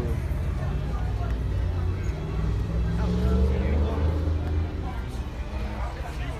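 A car engine running close by: a low rumble that swells and rises in pitch about three seconds in, then eases off, over people talking in the background.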